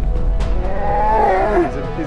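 A grizzly bear vocalizing: a low rumble, then a drawn-out moan that rises and falls about a second in, over background music.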